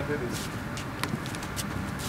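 Outdoor city background: a steady low hum of distant traffic, with faint murmured voices and a few light clicks, one a little sharper about a second in.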